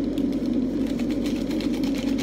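Powdered drink poured from a foil sachet into a wine glass: a rapid patter of light ticks, about ten a second, over a steady low background hum.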